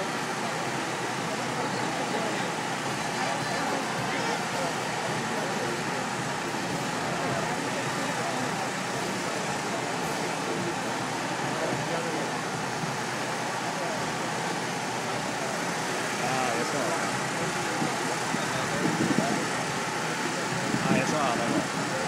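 Busy city street ambience: a steady wash of traffic noise with indistinct crowd chatter mixed in.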